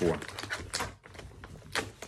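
Small plastic accessory packaging being handled and rummaged through inside a cardboard box: a few short, sharp clicks and crackles, the clearest a little under a second in and again near the end.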